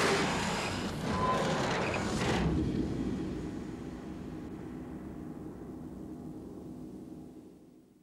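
A film sound effect: a sudden loud rush of noise that settles into a low rumble and fades away near the end.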